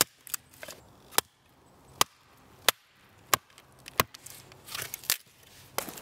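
Small hatchet splitting kindling on a wooden chopping block: a run of sharp chops, about one every two-thirds of a second. A few lighter cracks come near the end.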